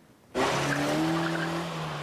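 A motor vehicle, cutting in abruptly about a third of a second in: a loud rush of noise with a steady low hum under it.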